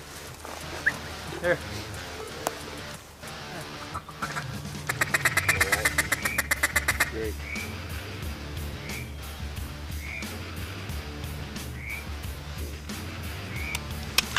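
Mallard duck call blown to work incoming ducks: a fast, even run of quacks about ten a second in the middle, then single quacks spaced a second or more apart, over a low background music bed.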